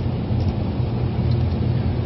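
Steady low rumble of engine and road noise inside a car's cabin while driving.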